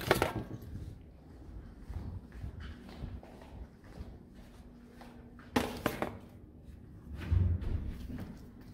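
A few sharp knocks and thuds with light rustling, as a handheld camera is moved about, over a faint steady hum of the room. A low thud comes near the end.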